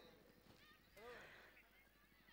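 Near silence: faint outdoor background, with one faint distant call about a second in.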